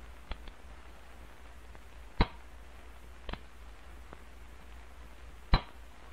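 Pistol being dry-fired in snapping-in practice: a few sharp metallic clicks of the action and the falling hammer, the loudest about two seconds in and again about five and a half seconds in, over a low steady hum.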